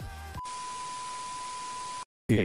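Electronic background music cuts off about half a second in. It gives way to a steady single-pitch beep tone over a flat static hiss, a test-tone-and-static sound effect used as a transition, which stops abruptly at the end.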